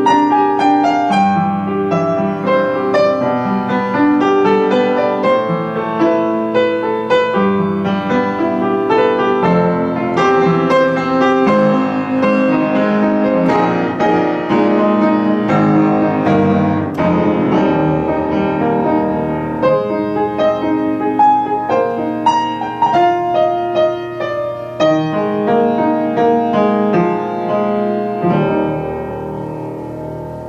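Charles R. Walter console piano being played: a continuous flowing passage of single notes over sustained chords. The playing grows softer near the end.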